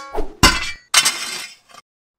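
Layered sword-fight sound effects: a quick run of sharp metallic hits and crashes, each trailing off in a noisy scrape, then cutting to silence near the end.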